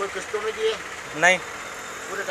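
A man's voice in short bursts of speech over a steady background hum.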